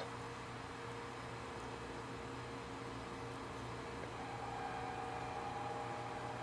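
Steady background hiss and hum of room noise, with a faint steady whine that shifts to a higher pitch about four seconds in.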